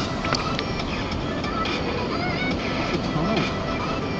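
An old truck driving along firm beach sand in low gear: steady engine, tyre and wind noise.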